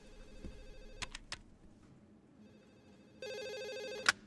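A few short clicks about a second in. Near the end an office IP desk phone starts ringing with a steady electronic ring tone.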